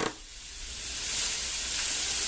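Steaks and a sausage sizzling on a hot aluminium baking tray heated by a burning-alcohol can burner. The hiss drops briefly at the start and builds back within about a second.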